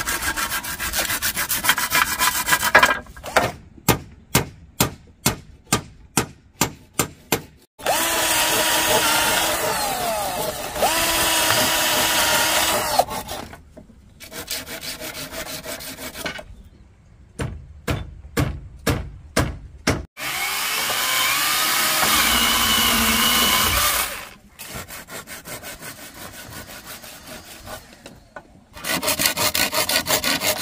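A hand pruning saw cutting through green bamboo poles in steady back-and-forth strokes, about two a second at times. A cordless drill runs in a few longer bursts in between.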